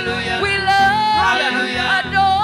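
A church worship team singing a gospel song together, with keyboard accompaniment, one note held near the middle.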